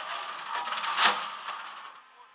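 A tow chain rattling and clattering against a rollback tow truck's metal deck as it is handled and laid out, with the loudest clatter about a second in.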